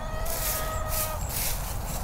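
Hands pushing a tomato cutting into wood-chip mulch and soil, with a scratchy rustle. Over it a steady high whine-like tone lasts about a second and then stops.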